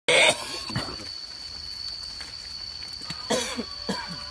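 A person coughing: a loud, harsh cough right at the start, a smaller one just before a second in, and more coughs, partly voiced, near the end. A thin steady high tone runs underneath.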